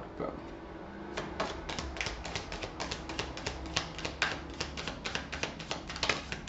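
A deck of cards being shuffled by hand: a fast run of light card clicks, about eight a second, starting about a second in.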